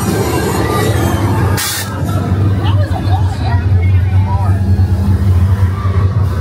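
Haunted-house walkthrough soundscape: a loud, steady low rumble, a short sharp hiss of air about one and a half seconds in, and voices.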